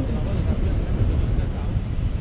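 Wind buffeting the camera microphone in paraglider flight: a steady, fluttering low rumble of rushing air.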